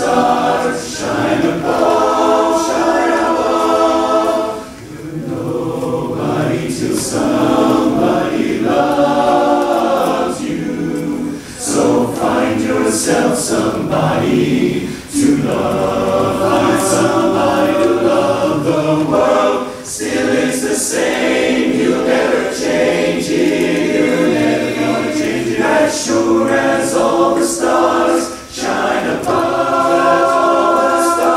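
Men's barbershop chorus singing a cappella in close four-part harmony, long sung phrases broken by a few short pauses.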